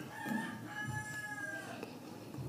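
A rooster crowing once in the background: a single drawn-out call of about a second and a half that drops in pitch as it ends.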